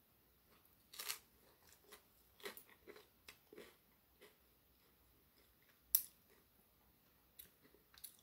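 A mouth biting and chewing a crisp-baked frozen pepperoni pizza crust: faint, irregular crunches, the loudest about a second in, with a sharp click near six seconds.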